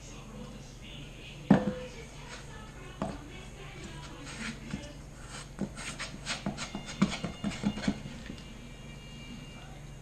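Hands kneading a sticky ball of honey-and-powdered-sugar queen candy in a stainless steel bowl, the dough and fingers knocking against the metal: one sharp knock about a second and a half in, then a run of irregular small clicks and taps through the middle.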